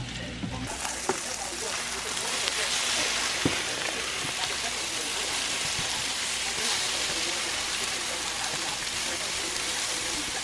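Scrambled eggs with tomato sizzling in a nonstick frying pan: a steady frying hiss that sets in within the first second, with a few light taps of a silicone spatula as the eggs are stirred.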